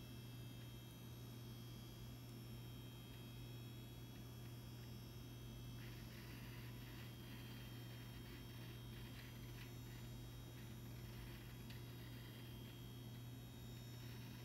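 Power Mac G4 booting, its original hard drive and fans giving a steady low hum with faint thin whines above. From about six seconds in, faint scattered ticking of the drive joins in. The drive sounds really bad, which the owner takes for a sign that it is about to fail.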